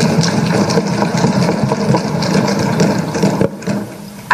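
Assembly members thumping their wooden desks in approval: a dense rattle of many irregular knocks that dies away about three and a half seconds in.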